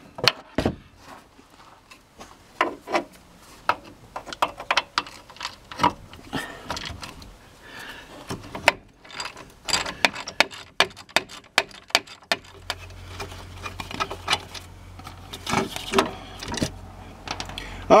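Half-inch ratchet with a 15 mm deep-well socket working a brake caliper bolt loose: irregular runs of pawl clicks and metal clinks. A low steady hum comes in about two-thirds of the way through.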